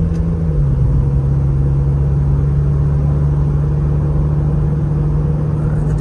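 A 1995 Mazda Bongo Friendee's turbodiesel engine, mounted under the front seats, drones steadily under throttle at highway speed, heard from inside the cab over road noise. Its note steps down in pitch about half a second in and then holds steady.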